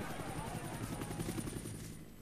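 Helicopter rotor beating rapidly and evenly, fading away toward the end.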